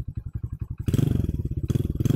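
Honda Win 100 motorcycle's single-cylinder engine running at idle with an even, rapid exhaust beat, getting louder for a moment about a second in.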